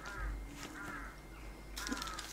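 A bird calling faintly, a few short cries.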